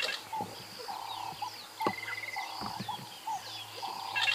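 Wild birds calling in the bush: short repeated calls, a brief trill and several small rising and falling chirps, over a steady high insect buzz.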